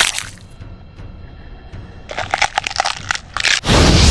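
Animated-fight sound effects over background music: a loud burst fades just after the start, then a quick run of sharp crackles from about two seconds in, and another loud burst near the end.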